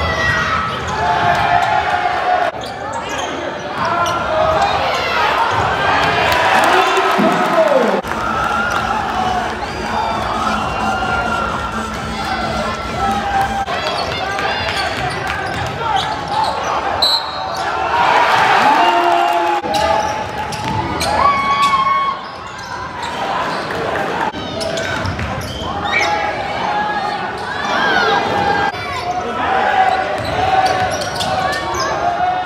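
A basketball being dribbled and bounced on a hardwood gym court during play, heard from the stands. Voices of spectators talk all around.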